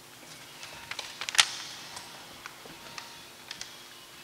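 Paper ballots and envelopes being handled at a wooden ballot box: scattered light clicks and paper rustles, with one sharper knock or snap about a second and a half in.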